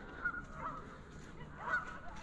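Geese honking in the distance, about three faint calls over quiet outdoor background.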